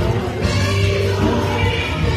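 Gospel praise team singing together in harmony, backed by a live band with a steady bass line.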